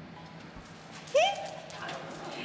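A Samoyed puppy gives one loud call about a second in: it rises sharply in pitch, then holds briefly before fading.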